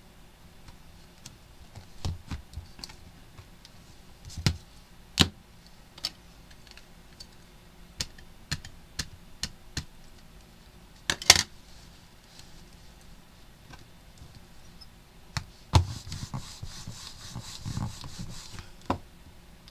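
Scattered clicks and knocks of a plastic stamp positioning tool and card stock being handled on a desk, with a loud double knock about eleven seconds in and another knock near sixteen seconds. Near the end comes a soft rubbing patter as an ink pad is dabbed onto the stamp.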